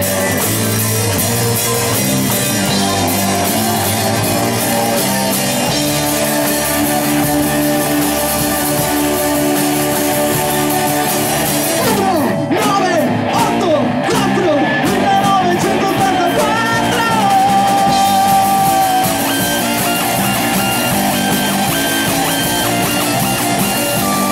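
A rock band playing live: electric guitars over a drum kit. About halfway through, a lead line slides up and down in pitch and then settles into a long held note.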